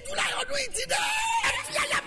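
A voice yelling, with one cry held for about half a second near the middle.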